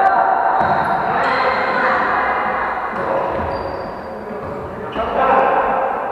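A volleyball being struck during play, with dull thuds ringing in a gym hall while players' voices call out.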